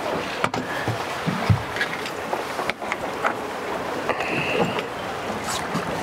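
Steady wind and sea wash around an open boat deck, with scattered light clicks and knocks of fishing gear being handled, the sharpest about one and a half seconds in, and a brief faint high tone about four seconds in.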